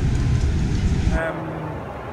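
Loud, steady low background noise of a crowded exhibition hall that cuts off suddenly about a second in, giving way to quieter hall noise with a faint low hum and a man's brief 'um'.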